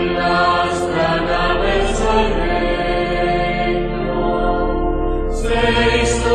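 Marching brass band playing a slow hymn in long held chords, with a few cymbal crashes on the beat.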